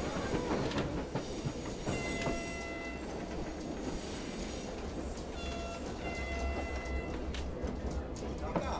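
Interior of a moving train carriage: a steady low rumble with scattered rattles and clicks. A steady high tone sounds twice, about two seconds in and again about five and a half seconds in, each lasting about a second.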